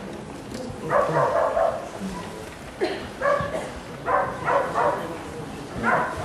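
Speech in short, separated phrases with pauses between them, heard through a lecture microphone.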